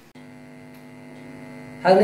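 Steady electrical mains hum, a buzz of several steady tones together, starting just after the beginning and growing slightly louder. A man's voice begins near the end.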